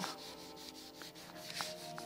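Palms rubbing firmly back and forth over paper laid on a gel printing plate, a faint dry swishing in repeated strokes. The paper is burnished hard to lift fast-drying paint off the plate.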